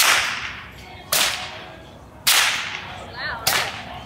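A whip cracked four times, roughly once every second or so. Each sharp crack is followed by a short fading tail.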